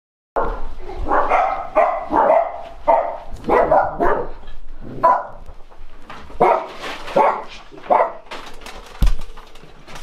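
A dog barking repeatedly, about a dozen separate barks at an irregular pace, with a sharp thump about a second before the end.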